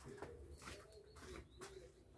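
Near silence, with a bird cooing faintly in the background.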